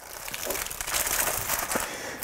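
Plastic packaging crinkling and rustling as a packaged crankbait is pulled out of a bag.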